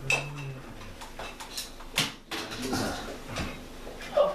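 Irregular knocks, clicks and light clatter of objects being handled and moved while someone rummages for a booklet, with the sharpest knock about halfway through.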